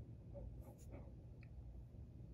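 Faint low hum of room tone with a few soft, brief rustles and ticks about half a second to a second and a half in: fingers handling an iPhone and swiping its power-off slider.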